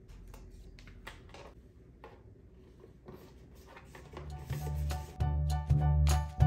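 Faint clicks and taps of a cardboard pop-up gift box being folded and handled. Then, about four seconds in, background music with a heavy bass beat fades in and grows loud.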